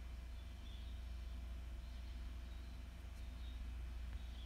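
Quiet room tone with a steady low hum underneath; no distinct event.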